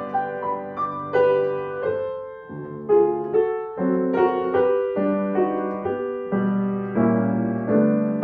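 Grand piano playing a hymn arrangement in full chords over a bass line, with a brief softer moment about two and a half seconds in.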